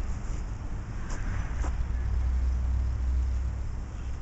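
Steady low rumble of outdoor background noise, with a couple of faint clicks a little after a second in.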